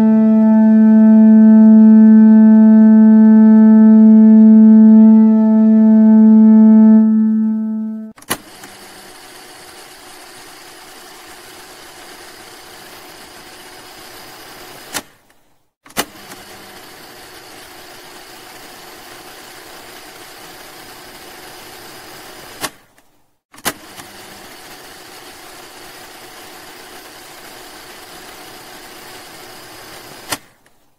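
A loud, steady low drone tone with many overtones, held for about eight seconds before it stops. Then a quiet, steady scratching of a felt-tip marker drawing on paper follows, broken by short gaps with clicks at the edit points.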